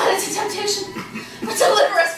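A person's short wordless vocal sounds, in broken bursts, loudest near the end.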